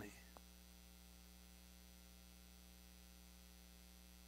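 Near silence: a low, steady electrical hum, with one faint click shortly after the start.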